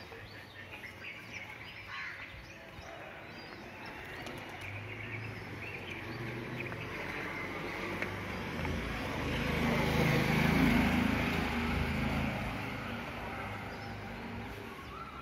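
Birds chirping in the first few seconds. Then a motor vehicle passes out of sight, its sound swelling to a peak about ten seconds in and fading away.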